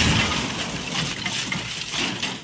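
A loud rush of gushing water that eases off near the end.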